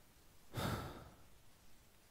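A single short exhaled breath close to the microphone, like a sigh, about half a second long and a little over half a second in.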